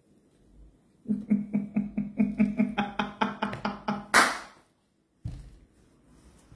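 A woman laughing: a run of rhythmic "ha" pulses, about four or five a second for three seconds, ending in a sharp breath.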